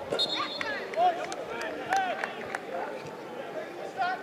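Players and spectators shouting and calling out on a football pitch during a chance at goal. The loudest shouts come about a second and two seconds in, with a few sharp knocks among them.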